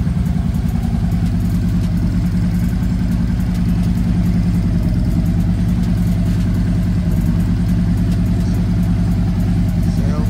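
Harley-Davidson Street Glide's V-twin engine idling steadily at about 1,190 rpm, shortly after a cold start.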